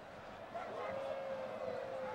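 Stadium background noise carried on a football broadcast, with one long held call that rises a little and then slowly falls.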